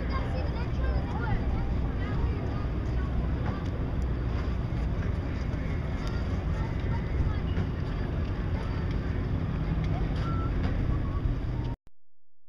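Wind rumbling steadily on the microphone, with faint distant voices in the background; it cuts off suddenly near the end.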